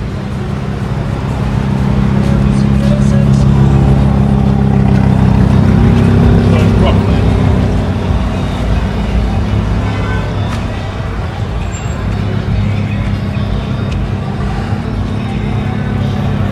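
Street traffic: a car engine running close by with a steady low hum, swelling over the first few seconds and easing off after about eight seconds. Passers-by talk and music plays underneath.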